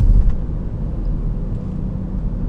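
Car cabin noise while driving: a steady low rumble of engine and road, briefly louder just at the start.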